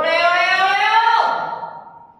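A person's long, loud, high-pitched shout, rising slowly in pitch and then dropping away, lasting under two seconds.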